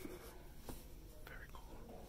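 Faint whispered or hushed voices, with a few light clicks.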